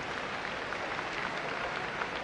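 Lecture-hall audience applauding, a steady dense clatter of many hands clapping.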